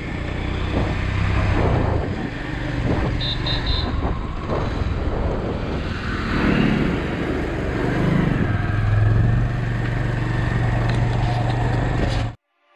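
Motorcycle engine running on the move, heard through a helmet-mounted GoPro's own microphone with steady wind and road rush over it. Three short high beeps come a little after three seconds, and the low engine hum settles steadier about two-thirds through.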